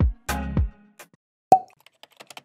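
Electronic intro music with deep kick-drum beats that stops about half a second in, then a single sharp cartoon 'plop' sound effect about a second and a half in.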